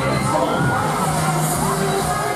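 Riders screaming and shouting on a spinning fairground thrill ride, many cries rising and falling over one another, with fairground music underneath.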